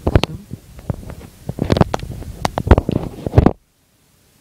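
Irregular clicks, knocks and rubbing close to the microphone, as of hands handling the camera and hard plastic parts, cutting off suddenly about three and a half seconds in.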